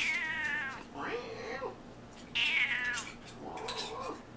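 Black-and-white cat meowing four times in quick succession; the first and third calls are long and fall in pitch, the others shorter and lower.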